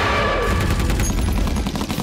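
Rapid automatic gunfire, starting about half a second in, over a deep low rumble: film sound effects of soldiers firing at the creature.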